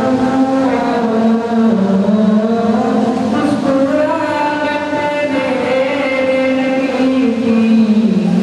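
Male voice singing a naat, an unaccompanied Islamic devotional song, in long drawn-out notes. The voice rises to a higher held note about halfway through and comes back down near the end.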